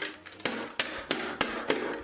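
A rapid series of sharp knocks, about three a second, starting about half a second in.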